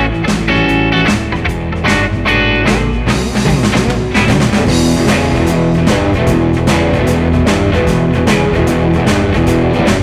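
Electric guitar playing a fast, driving shuffle blues riff in E at about 150 BPM over a backing track with drums.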